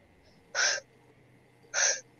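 Two short, breathy puffs of air about a second apart, hiss-like and without pitch.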